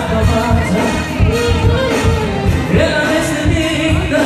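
A live band playing a Greek song, with a man singing the melody over a steady drum beat.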